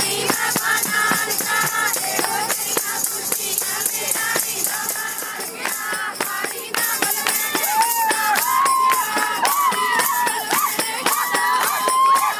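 Group of women singing together, with a hand-held tambourine jingling and hands clapping in quick rhythm.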